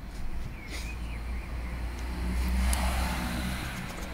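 A road vehicle passing: a low rumble with tyre noise that swells to its loudest about three seconds in, then eases off.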